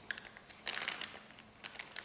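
A small clear plastic parts bag crinkling as it is handled in the fingers, in two short bursts of rustling: one just over half a second in and another near the end.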